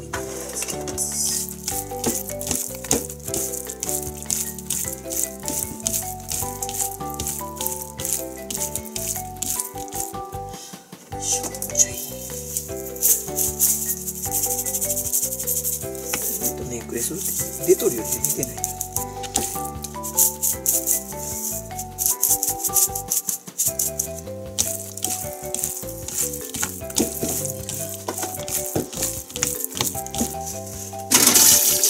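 Seasoning shaker canister rattling in quick repeated shakes as it is shaken over raw chicken pieces, over light background music with a simple stepping melody.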